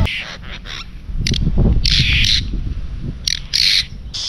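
Birds giving a series of short, harsh squawking calls, about five of them spread across a few seconds.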